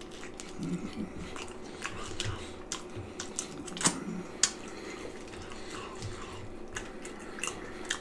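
A man chewing a mouthful of cheese pizza topped with pork and beans, with a run of small wet mouth clicks and smacks. A couple of sharper clicks come about four seconds in.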